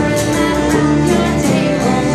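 A live acoustic folk band playing: fiddle and strummed acoustic guitar, with a woman singing the melody.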